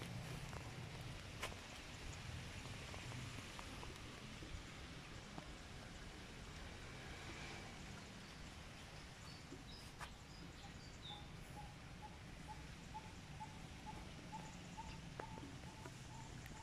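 Faint outdoor background with a few small handling clicks; in the second half a bird calls a short repeated note, about two to three notes a second, after a few higher chirps.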